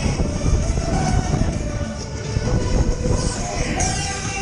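Steady rumble of a spinning funfair ride heard from on board, with wind on the microphone, and fairground music playing underneath.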